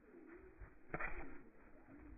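Faint, low, wavering bird calls in the background, with a soft knock about a second in.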